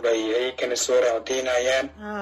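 Speech only: a woman talking in Somali.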